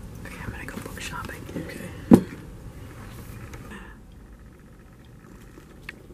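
A quiet whispered voice for the first couple of seconds, then one sharp knock about two seconds in, the loudest sound.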